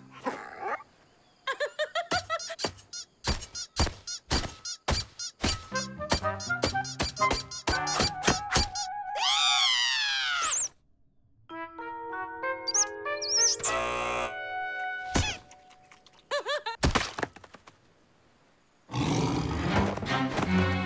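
Cartoon soundtrack of music and slapstick sound effects: a quick run of knocks and clicks, then a long falling squeal about halfway, then held notes, broken by short near-silent gaps.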